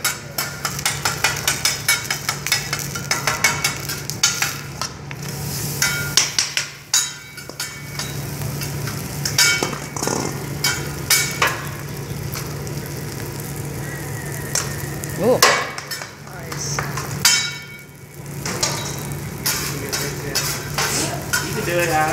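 Metal spatulas clicking and scraping on a hot teppanyaki griddle as egg and rice fry and sizzle. The clicks come rapidly in the first few seconds, then in scattered strokes, over a steady low hum.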